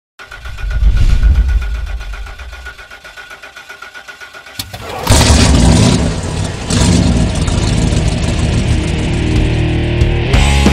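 An engine starting, with a loud low rumble about a second in that fades back to a pulsing idle. About five seconds in, loud heavy rock music comes in suddenly.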